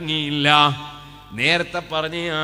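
A man's voice chanting a recitation in long, held melodic notes. The first note fades out partway through, then a new note rises in pitch about one and a half seconds in.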